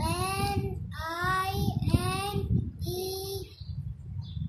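A young boy chanting in a sing-song voice: four drawn-out syllables as he recites number names and spells them out letter by letter.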